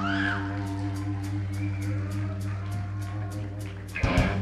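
Live rock band holding a sustained electric guitar and bass chord that drones steadily, with a cymbal ticking evenly about three to four times a second over it.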